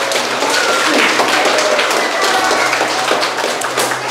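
A crowd of schoolchildren and adults clapping in dense, continuous applause, with a few voices faintly heard through it.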